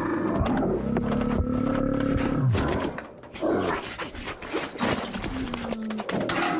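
A bear growling in one long low call, followed by a rapid run of clatters and knocks as it rummages among food and objects.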